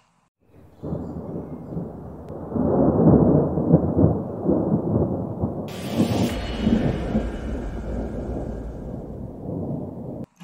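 Thunder-style rumble sound effect under an animated logo intro. It starts about a second in, swells loudest around three to four seconds, and a brighter hissing layer with a deep low rumble beneath comes in around six seconds and carries on to the end.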